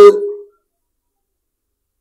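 A man's voice finishing a word and trailing off in the first half second, then near silence for the rest.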